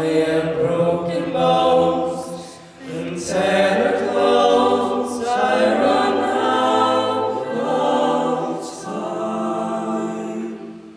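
A five-voice a cappella group (soprano, alto, tenor, baritone and bass) singing sustained chords into handheld microphones. The singing breaks off briefly about three seconds in, then carries on.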